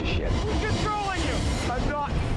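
Dialogue from the film's soundtrack over a low, steady rumble.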